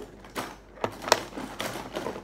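Pens and markers clicking and clattering against each other as a hand rummages in a pencil case: a handful of sharp clicks, the loudest a little past the middle.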